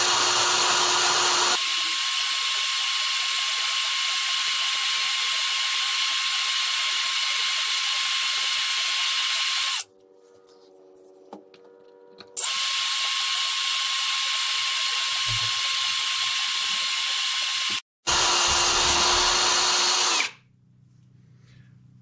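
Parkside Performance PSBSAP 20-Li A1 brushless cordless drill running in first gear at low speed, a thin twist bit that is not very sharp cutting into 5 mm thick steel. The drill runs steadily for about ten seconds, stops for a couple of seconds, then runs again with a short break, and stops near the end when the pilot hole goes through.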